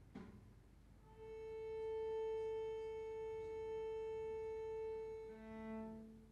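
A faint knock, then a cello sounding one long, steady bowed note for about four seconds; near the end a lower note joins it.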